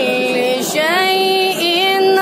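A teenage boy's voice reciting the Quran in melodic tajwid style, drawing out long held notes joined by a rising, ornamented glide partway through.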